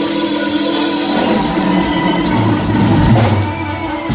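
Live blues band of electric guitar, amplified harmonica, bass and drums holding out the final chord of a song over the drums, closing with one last hit right at the end.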